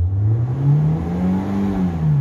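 Renault Logan 1.6's four-cylinder petrol engine revved from idle: its pitch climbs smoothly to about 5,000 rpm and begins to fall back near the end. It runs normally, its clogged injectors cleaned and its faulty ignition-coil connector replaced after the no-start caused by adulterated fuel.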